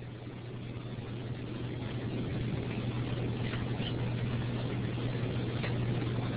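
Steady low electrical hum with background hiss from an open microphone on a web-conference audio feed, slowly growing a little louder.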